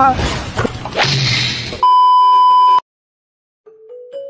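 A noisy, crash-like burst of cartoon sound effects, then a loud, steady electronic beep that lasts about a second and cuts off abruptly. After a brief silence, light music begins near the end.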